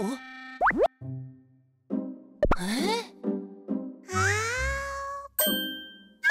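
Cartoon soundtrack: light children's music with quick comic sound effects, among them a fast rising slide about a second in, and wordless cartoon-character vocal sounds with gliding pitch.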